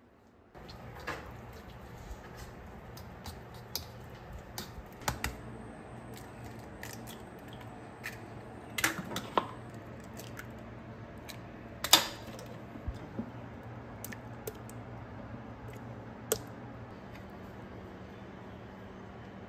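Eggs being cracked into a small bowl: scattered light taps and clicks, the sharpest crack about twelve seconds in, over a steady low hum.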